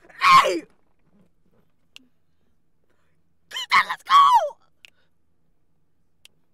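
A woman's excited vocal exclamations, no words, twice: a short squeal falling in pitch just after the start, then about three seconds later a longer, broken burst of squeals that also falls in pitch.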